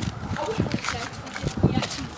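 Phone microphone knocking and rubbing against clothing as it is carried, with irregular thumps and muffled voices.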